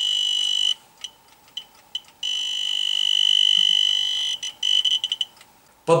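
Handheld Radiascan dosimeter sounding its high-radiation alarm: a high-pitched electronic tone that breaks into short rapid beeps about a second in, holds steady again for about two seconds, then gives a few more short beeps and stops. It is alarming at a reading of about 7.3 milliroentgen per hour, shown as dangerous, from the radioactive luminous paint on an old watch's hands.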